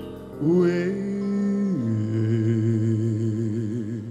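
Male soul singer holding a wordless sung note, sliding up into it just after the start, then dropping to a lower note about two seconds in and holding it with vibrato.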